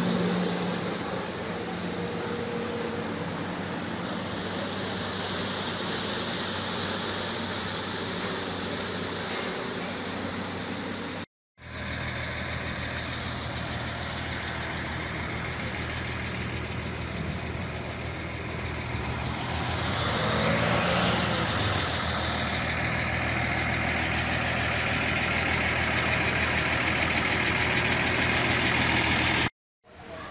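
Jet ski engines running on the river. After a break they give way to road traffic, with one vehicle passing about twenty seconds in. A steady high-pitched drone runs under both.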